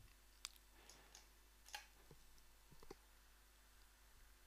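Near silence with a few faint, sharp computer mouse clicks, the clearest about half a second in and just before the two-second mark, and a small cluster near three seconds.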